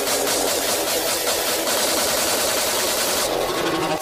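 A steady, dense, machine-like buzz with a fast rattle and a bright hiss; the hiss thins a little near the end.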